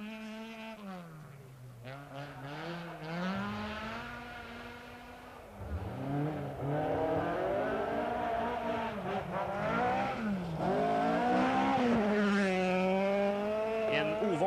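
Rally car engines revving hard, the pitch climbing and dropping again and again with throttle and gear changes. It gets louder from about six seconds in.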